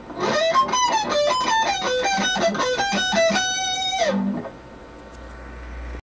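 Electric guitar playing a fast lead run of single notes in repeated falling sequences. It ends on a held note about three and a half seconds in, which slides down in pitch and stops. A low hum rises in the last second.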